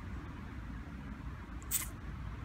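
Steady low outdoor background rumble with a short hiss near the end.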